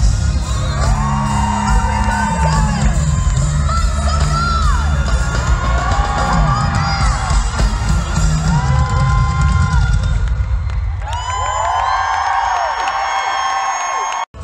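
Live pop concert music with a heavy bass beat over a large arena sound system, heard from among the audience, with the crowd cheering and screaming over it. About ten seconds in the bass drops out, leaving high synth tones and the crowd.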